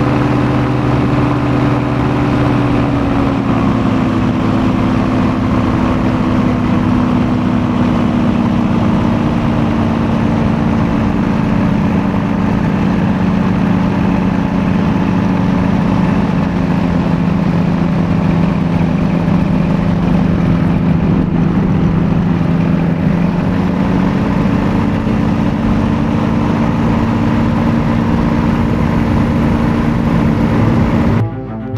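Paramotor engine running steadily in flight. Its pitch drops slightly a few seconds in and rises again about two-thirds of the way through.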